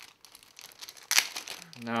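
Clear plastic bag crinkling as hands handle a plastic replacement toy part inside it, with one sharper rustle about a second in.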